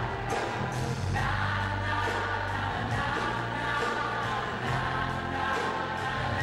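Live band music with several voices singing together over a steady beat.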